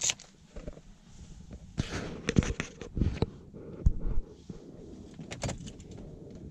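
Irregular clicks and knocks as the ignition key is turned and handled, with a sharp click at the start and a busier cluster about two seconds in. The engine is not running: the ignition is switched on without cranking.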